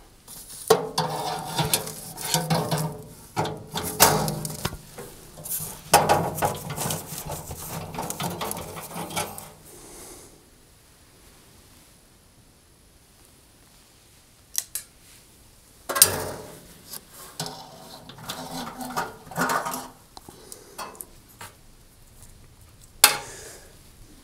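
Metal clinking and scraping as a long screwdriver works inside a cooker's grill compartment and the old grill element is pulled out past the bracket. The clatter is busy for the first ten seconds or so, goes quiet for a few seconds, then returns as scattered sharp knocks and clicks.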